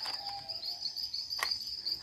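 Insects trilling steadily at a high pitch, with two sharp clicks, one at the start and one about a second and a half in.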